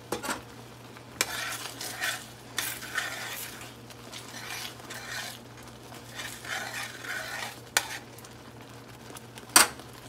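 A spoon stirring a thick cream sauce in a frying pan to melt cheese slices into it: repeated wet scraping strokes, with a few sharp clicks of the utensil against the pan, the loudest near the end.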